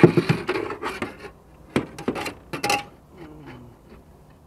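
Clattering, rustling and knocks of a caught trout being handled and laid against a measuring ruler: a busy burst of clatter in the first second, then a few separate knocks.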